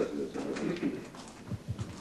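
A man's low voice trailing off in the first second, then a few dull footsteps near the end.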